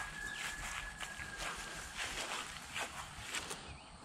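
Soft, irregular footsteps through short pasture grass, over a low outdoor hiss.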